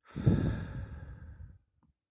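A person's long sigh close to the microphone, loudest at the start and trailing off over about a second and a half.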